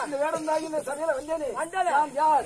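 An actor singing a Tamil folk-drama song, his voice gliding up and down in quick ornamented arcs, several to a second, within a repeated refrain.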